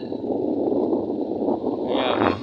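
Steady rushing wind noise on the microphone, mixed with road noise from moving along a road.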